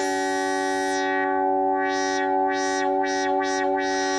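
Virtual analog Minimoog synthesizer model running on a SHARC Audio Module, holding sustained notes with the filter emphasis and contour turned up. The tone starts bright and closes down within the first second, then the filter opens and closes over and over, about two to three sweeps a second: a classic analog filter sound.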